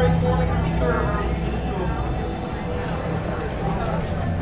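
Restaurant background: indistinct chatter of other diners over a steady low hum.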